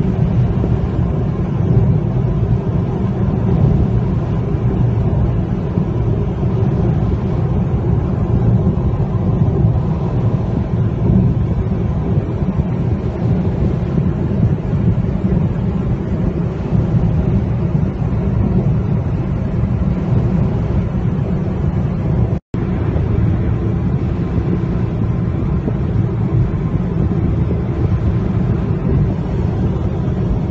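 Steady low rumble of road and engine noise inside a moving car's cabin. It cuts out for an instant about three-quarters of the way through.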